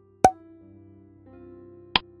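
Presentation sound effects: a short pop as an answer option appears, followed by a soft sustained synth tone that shifts pitch, and a sharp tick near the end as a on-screen countdown timer starts ticking.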